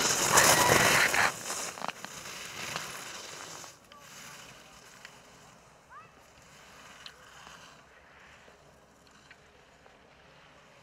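Alpine racing skis carving across groomed snow close by: a loud hiss of edges scraping and snow spraying as the racer passes, dying away over the next few seconds as the skier moves off down the course.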